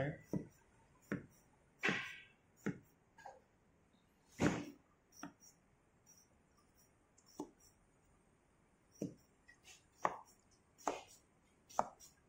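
A thin steel vent wire being pushed into the rammed moulding sand of a sand-casting mould, making irregular short taps and scratches, with one louder knock about four and a half seconds in. It is pricking vent holes so that air can escape from the mould cavity and not cause a casting defect.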